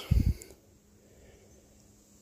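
A brief low thump about a quarter second in, then faint, steady outdoor background.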